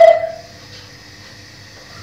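A kitchen utensil knocked down hard on the counter: one sharp clink at the very start with a short ring that dies away within half a second, then a faint steady hum.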